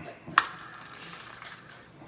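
Plastic BeanBoozled game spinner being spun: a sharp click about half a second in, then a fainter rattling whir as it spins down, picking which jelly bean flavour pair to try.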